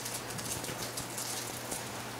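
Room tone: a steady low hum and hiss with faint scattered crackles.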